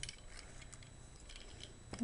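Faint, scattered clicks of plastic parts as a Robocar Poli transforming toy is folded by hand.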